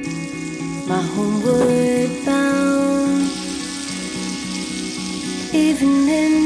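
Butter sizzling as it melts on a hot griddle plate, the hiss growing from about halfway through, under a background song with guitar and singing.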